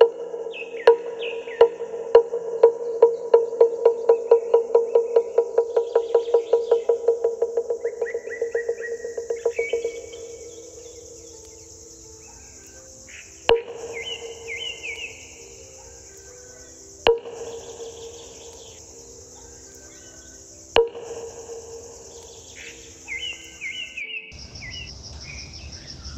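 A bell struck in a quickening roll that fades out about ten seconds in, followed by three single ringing strokes a few seconds apart. Birds chirp and a steady high insect drone runs underneath.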